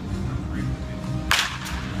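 Baseball bat striking a pitched ball: one sharp crack about a second and a quarter in, followed closely by a fainter second knock.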